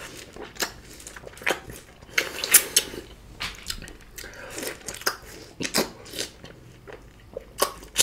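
Biting into and chewing juicy green orange wedges: irregular sharp crunches and wet mouth sounds, several a second at times.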